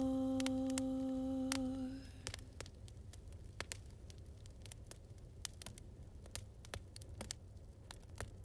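A single hummed note, held at the end of a song, fades out about two seconds in. After it come the sparse pops and crackles of wood logs burning in a fireplace.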